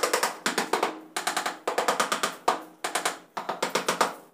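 Rapid runs of sharp knocks on a ceramic wall tile as it is tapped into its mortar bed, several quick strikes per run, about two runs a second.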